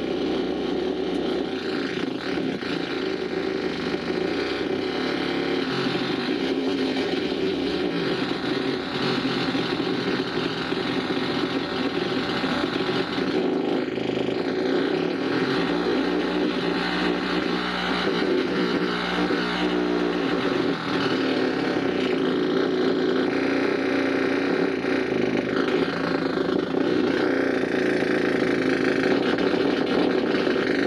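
Amplified noise music: a dense, steady electronic drone from effects pedals and feedback, shifting slowly in texture and growing slightly louder near the end.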